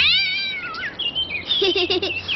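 A cartoon cat's startled yowl, a single cry rising then falling over most of a second, as a duckling pecks and grips its tail.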